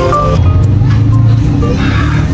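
Background music with short melodic notes that thin out about half a second in, over the low rumble of a motorcycle passing close by.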